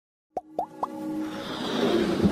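Animated logo intro sound effects: three quick pops about a quarter second apart, each gliding upward in pitch, then a swelling sound with a held note underneath that grows steadily louder.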